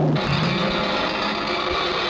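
Electronic synthesizer sound of a film-studio logo: a falling sweep ends at the very start, then a dense, steady drone of many tones over a low held note.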